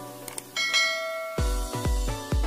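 Two faint clicks, then a bright bell chime that rings out for under a second: the notification-bell sound effect of a subscribe-button animation. About one and a half seconds in, electronic music with a heavy bass beat comes in.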